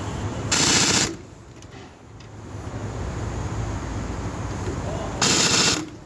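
Pneumatic impact wrench hammering on a car wheel's lug nuts in two short rattling bursts, one about half a second in and one near the end, with a quieter steady running sound in between.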